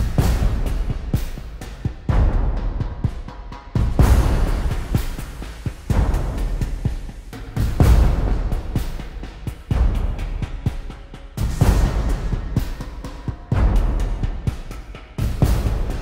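Soundtrack music with a heavy, deep drum hit about every two seconds, each one fading before the next.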